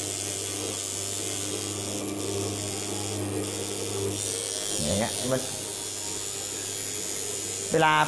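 Tattoo machine running with a steady low buzz while being worked into a practice skin.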